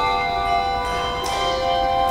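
Handbell choir playing: brass handbells rung in chords about once a second, each chord ringing on and overlapping the next.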